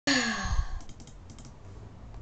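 A person's short, breathy, voiced sigh, falling in pitch, in the first moment, followed by a few faint clicks.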